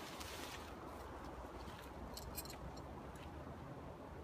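Light, sharp clicks in a quick cluster about two seconds in, with faint rustling, from handling tent gear during a pyramid-tent pitch. A low steady rumble sits underneath.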